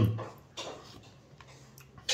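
A couple of faint, light ticks of a metal spoon against a white ceramic soup bowl, coming a little past the middle of the clip after the last word fades.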